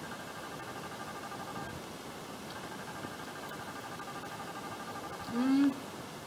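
A woman's short closed-mouth "hmm" while chewing a gummy bear, one hum near the end that rises then falls in pitch. A faint steady whine sits underneath throughout.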